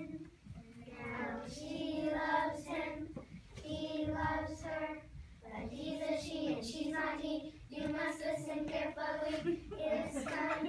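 A group of young children singing a song together in unison, in sung phrases of a second or two with short breaks between them.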